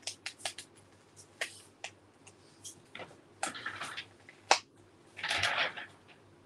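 Hands handling cardstock and paper on a scrapbook page: a run of small clicks, taps and crinkling rustles, with one sharp tap about four and a half seconds in and a longer paper rustle near the end.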